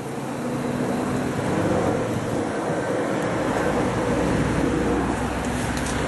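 Steady road traffic noise, a vehicle's engine and tyre rush growing louder over the first two seconds, with a deeper rumble joining about three seconds in.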